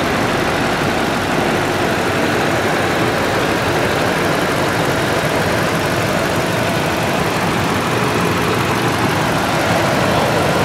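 2010 Toyota Sequoia's V8 engine idling steadily, heard from over the open engine bay.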